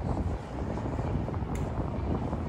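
Wind buffeting the microphone as a low, uneven rumble, with a faint click about one and a half seconds in.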